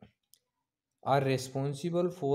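A faint click, then silence, then a man speaking from about a second in.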